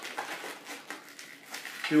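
Faint, irregular rubbing of a yellow 260 latex modelling balloon as it is worked by hand.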